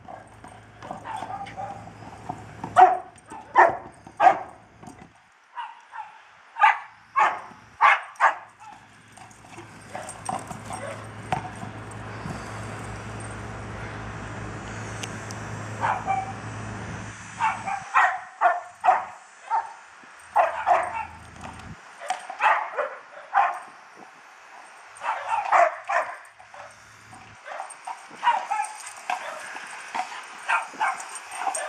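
A dog barking again and again in short sharp barks, in clusters with pauses of a few seconds between them.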